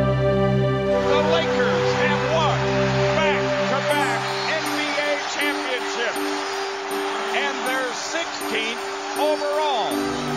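Edited-in music of sustained chords, with a light beat coming in about four seconds in, laid over an arena crowd cheering and shouting.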